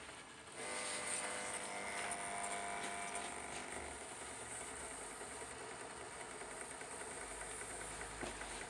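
Gas burner on a Rinnai stove hissing, the flow turned up by hand at the control knob so the hiss rises sharply about half a second in, with faint whistling tones in it, then holds steady and eases slightly.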